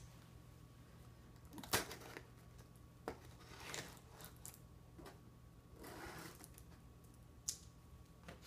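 Scissors slitting the packing tape on a small cardboard shipping box, with short scraping slides of the blade near the middle and again about six seconds in. Sharp clicks and knocks from handling the box and scissors, the loudest about two seconds in.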